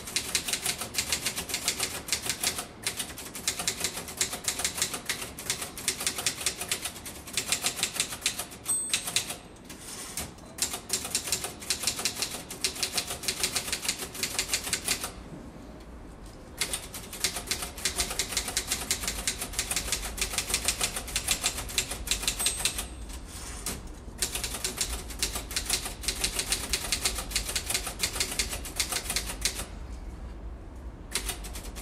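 Typing on a keyboard close to the microphone: rapid runs of keystroke clicks, broken by a few brief pauses, the longest about fifteen seconds in.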